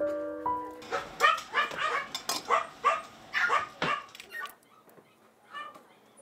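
Small dog barking in a quick run of short, high yips for a few seconds, starting about a second in, with piano music fading out at the start.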